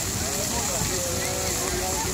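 Steady rushing noise of a large bonfire burning while fire hoses spray water jets onto it, with faint voices of onlookers underneath.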